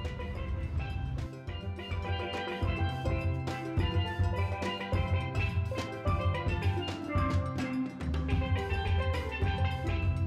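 Upbeat background music: short pitched percussion-like melody notes over bass and drums with a steady beat.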